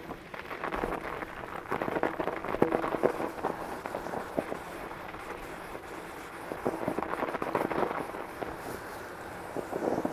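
2021 Northrock XC00 fat bike's wide tyres rolling over snow: a dense crunching crackle that swells twice, about two seconds in and again near the eighth second, with wind on the microphone.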